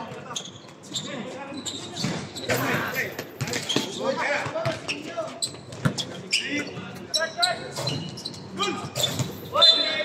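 Basketball bouncing on a hard court during a game, irregular thuds of dribbles and passes, with players' voices calling out around them.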